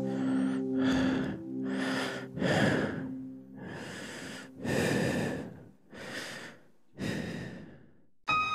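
Heavy breathing sample in a dark lo-fi track: about seven slow, breathy swells, one after another, with short pauses between. A held low synth chord lies under the first few breaths and fades out about three and a half seconds in.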